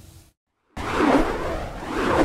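Broadcast news transition whoosh: after a split second of dead silence, a loud, rushing swoosh sound effect comes in just under a second in and carries on.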